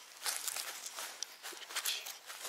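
Footsteps on grass strewn with dry fallen leaves: soft, irregular crunches and ticks coming closer, a little louder near the end.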